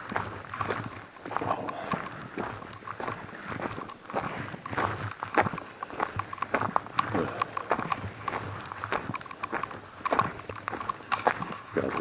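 Footsteps on a frozen gravel track: a run of short, irregular steps.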